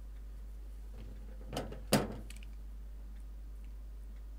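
Two short knocks about a third of a second apart, the second louder, as craft materials or a tool are handled and set down on a desk, over a steady low electrical hum.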